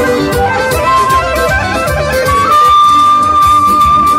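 Amplified Bulgarian folk dance music from Strandzha: the lead melody runs through quick ornamented phrases, then holds one long high note from about midway through, over a steady low beat.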